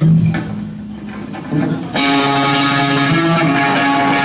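Live electric guitars and bass: a low note rings out and fades, then about two seconds in an electric guitar chord is struck and held over the bass as a song gets going.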